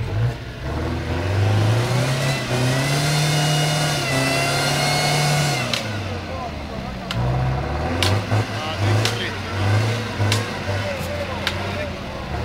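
Nissan King Cab pickup's engine revving hard as it pushes through deep mud: the revs climb over the first two seconds and are held high for a few seconds, then drop and come back as a series of short throttle blips. Several sharp knocks are scattered through the second half.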